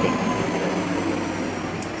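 Steady background noise, a fairly loud even hiss-like hum with no clear events, slowly getting a little quieter.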